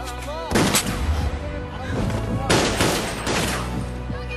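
Film gunfire: a rapid burst of handgun shots about half a second in and another burst about two and a half seconds in, over background music.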